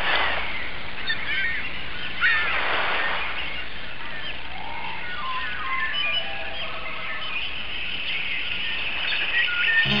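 Birds chirping and calling in many short, scattered notes over a steady background hiss, with two brief louder swells of noise near the start and around three seconds in.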